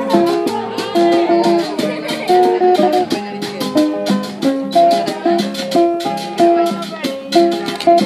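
Live Dominican son on two acoustic guitars, with a hand drum and a metal güira scraped in a steady rhythm that runs under the plucked guitar lines.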